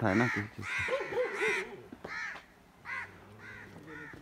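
A flock of crows cawing, several harsh caws in quick succession that grow fainter in the second half.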